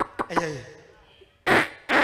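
A man's voice on a handheld stage microphone: a few quick syllables, then two loud, harsh bursts close on the mic about half a second apart, raspberry-like vocal noises, the second running into a shout.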